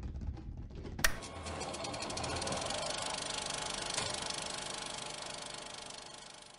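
Intro sound effect of a film camera running: a low rumble, a sharp click about a second in, then a fast, even mechanical clatter that fades out near the end.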